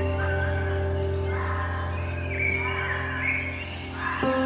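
Soft background music of held, sustained notes, with short chirping bird calls over it.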